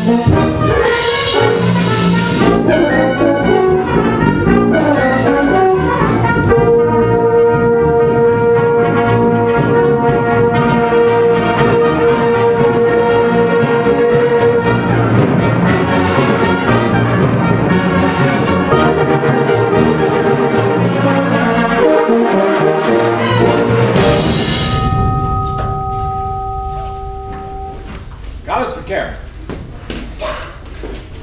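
Concert band with prominent brass playing the closing passage of a piece, ending on a long-held chord that is cut off about 24 seconds in. A single held tone lingers for about three seconds after the cutoff, and then the room goes much quieter.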